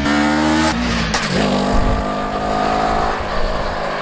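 Kawasaki Ninja 400's parallel-twin engine as the motorcycle is ridden hard past the camera. The engine note climbs, drops sharply about a second in, then climbs again under acceleration.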